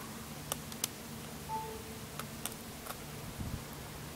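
iPhone 4S giving its brief, faint charging chime about a second and a half in, the sign that it has started charging from the solar panel's USB port. A few faint clicks of the cable and phone being handled come before and after it.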